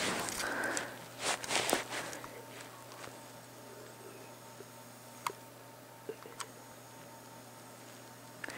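Rustling and light knocks from a hand-held camera being moved for the first two seconds, then quiet room tone with three short faint clicks.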